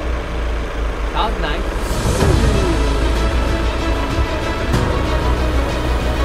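Volkswagen Passat TDI four-cylinder diesel engine idling steadily and smoothly just after starting, running on diesel fuel distilled from plastic waste.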